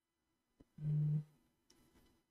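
A brief, flat low hum like a man's "mm", about a second in, just after a faint click. The rest is near silence.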